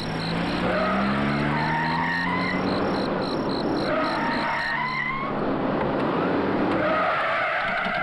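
Several car engines running and revving, with repeated tyre squeals, as a line of cars drives up and brakes to a stop. Crickets chirp steadily underneath for the first half.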